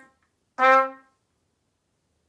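Trumpet playing short detached notes of one pitch: the end of one note fades out at the start, and one more short note sounds about half a second in.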